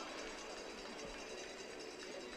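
Faint, steady background noise from the arena, with no distinct events.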